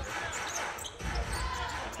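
A basketball being dribbled on a hardwood court, bouncing in short low knocks, under faint background voices.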